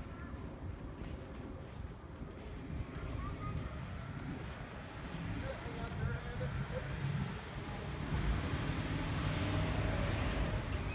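Outdoor background of low wind rumble on the microphone and street traffic, swelling louder over the last two seconds or so.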